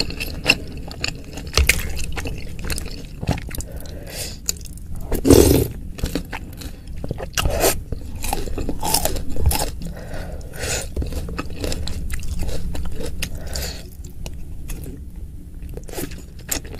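Close-miked chewing of chewy tapioca meatballs (bakso aci): irregular wet mouth clicks and crunches, with one louder crunch about five seconds in.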